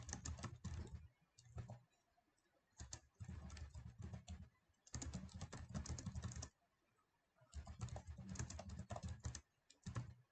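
Typing on a computer keyboard: five runs of rapid keystrokes, each from under a second to about two seconds long, separated by short pauses.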